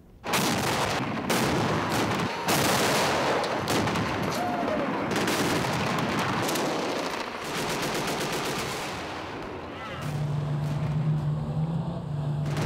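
Gunfire in rapid, repeated bursts, machine-gun fire mixed with single shots. About ten seconds in, a steady low hum joins it.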